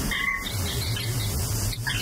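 Experimental electroacoustic noise music: short, scattered high blips and, from about half a second in, a low wavering hum.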